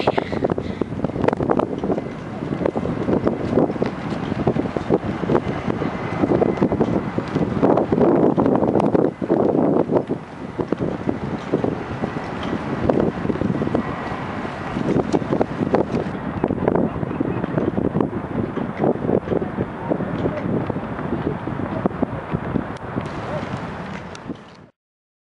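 Gusting wind buffeting the camera's microphone, a continuous rumbling roar that swells and drops with the gusts.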